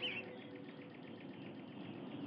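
Faint, quick, high chirping or ticking, about nine even pulses a second, after a brief squeaky chirp at the start.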